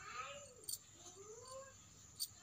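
Faint animal calls: two drawn-out cries that rise and fall in pitch, with a short sharp click between them.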